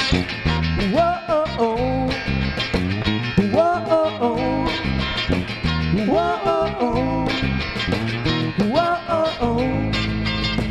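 Live rock band, with electric guitars, bass guitar and drums, playing a passage where a sliding melodic line comes back about every two and a half seconds over a steady beat.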